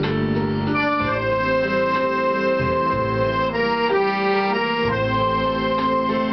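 Accordion playing a melody of held reedy notes over sustained low bass and chord notes, the notes changing about once a second.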